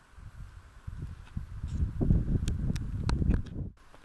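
Footsteps and trekking-pole tips clicking on rock, over a low rumble on the microphone. The sound cuts off abruptly near the end.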